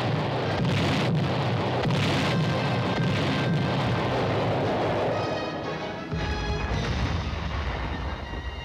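Film-score music over the booms of 105 mm howitzers firing and shells bursting. The booms make a dense, noisy din through the first five seconds or so, after which held musical notes come through more plainly.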